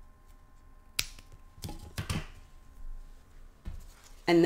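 Scissors snipping through a small piece of twine, one sharp snap about a second in, followed by a few softer handling noises as the twine and scissors are moved.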